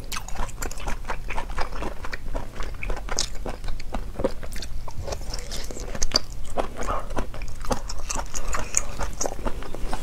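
Close-miked chewing of sliced surf clam dipped in soy sauce: a steady run of wet, crisp mouth clicks and crunches, with a louder bite about six seconds in as a fresh piece goes into the mouth.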